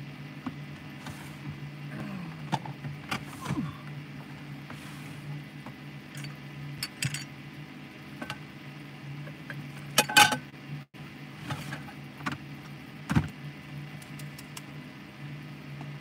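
Rummaging through a clear plastic storage bin: scattered clicks and knocks of plastic containers and lids, with a louder clatter about ten seconds in and a thump a few seconds later, over a steady low hum.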